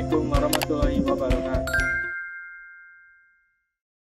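Outro background music with a steady beat and a singing-like melody, stopping about two seconds in. Just before it stops, a bright two-tone chime sound effect rings and fades away over about two seconds.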